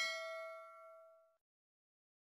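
Bell-chime sound effect from a subscribe-button animation: a single ding that rings and fades out over about a second and a half.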